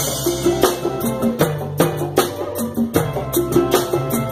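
Live reggae instrumental from a small band: electric guitar chords and congas with hand percussion over a steady beat.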